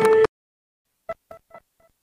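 Music with a steady held tone cuts off abruptly, leaving dead silence. About a second later come four short beeps, all at the same pitch.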